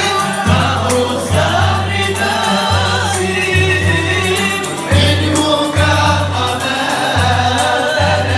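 Moroccan Andalusian (al-āla) orchestra playing live: a group of men singing together over bowed violins and other strings. A low bass note returns roughly once a second beneath the voices.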